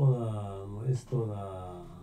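A man's voice drawing out two long hesitation sounds, like a held 'eeeh', each just under a second and sliding slowly down in pitch.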